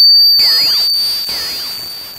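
A piercing high electronic tone run through a circuit-bent lo-fi filtered digital delay, its echoes fading steadily, with swooping down-and-up pitch glides as the delay is twisted by hand.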